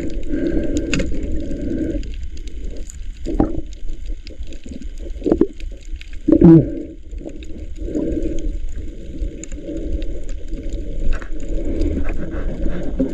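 Muffled underwater noise heard through a submerged camera: shifting gurgling water sound that swells and fades, with a louder gurgling burst about six and a half seconds in.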